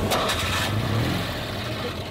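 Citroën 2CV's air-cooled flat-twin engine running at idle, its pitch lifting slightly about a second in.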